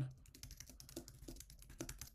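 Typing on a computer keyboard: a quick, light run of key clicks.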